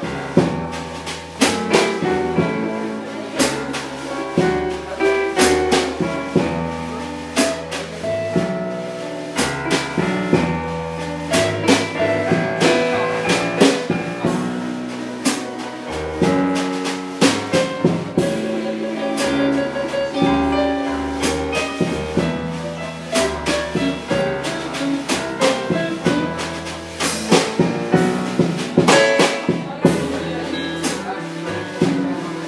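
Live blues band playing an instrumental passage of a slow blues, with drum kit, keyboard and electric guitar and a walking low bass line, the drums striking steadily throughout.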